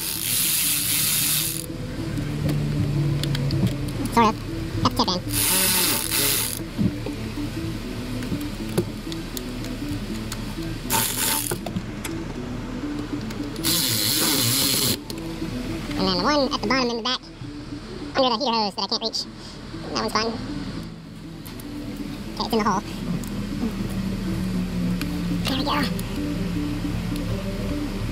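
Cordless ratchet running in several short bursts of about a second each, driving in the 10 mm bolts that hold the V8's ignition coil packs, with background music underneath.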